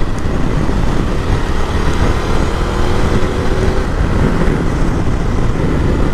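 Ducati Multistrada V2S's 937 cc V-twin pulling hard under acceleration in sport mode, heard through a loud, steady rush of wind and road noise at motorway speed.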